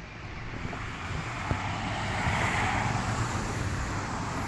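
Outdoor background hiss of distant road traffic, with no single sharp event, gradually growing louder and peaking about two and a half seconds in.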